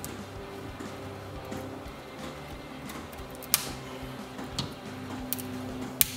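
Background music, with one sharp snip about halfway through and a couple of fainter clicks after it: small flush cutters snipping zip ties on a 3D printer's carriage.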